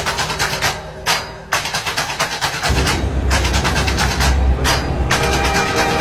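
Music with a steady beat; a heavy bass line comes in about three seconds in.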